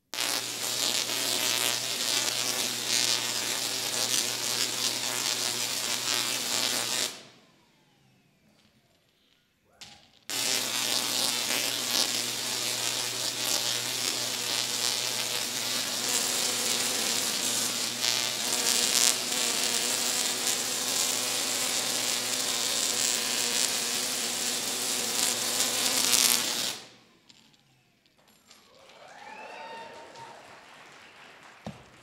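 Tesla coil firing, its sparks giving a loud, steady, harsh buzzing crackle over a low hum. It runs for about seven seconds and cuts off suddenly, then after about three seconds of near silence fires again for about sixteen seconds and cuts off suddenly.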